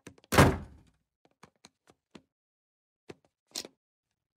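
A front door shutting with a heavy thunk about a third of a second in, followed by a few faint ticks.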